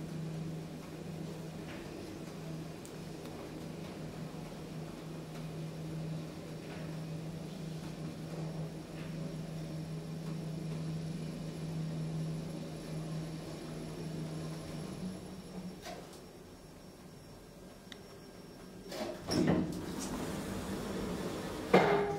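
KONE Monospace traction elevator car travelling upward with a steady low motor hum. Near the end the hum changes and drops away as the car slows and levels into the floor, in a stepwise way the rider calls very strange levelling. The sliding doors then open with a few short mechanical sounds.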